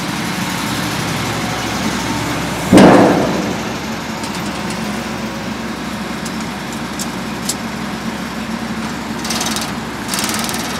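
A Slavutych KZS-9-1 combine harvester's diesel engine running steadily at idle. About three seconds in comes a single sudden loud thump, the loudest sound here, fading within a second.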